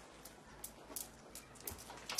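Quiet room tone with a few faint, light clicks of small objects being handled.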